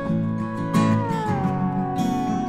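Acoustic guitars strumming chords under a sustained high melody note. About halfway through, the note slides smoothly down in pitch and then holds.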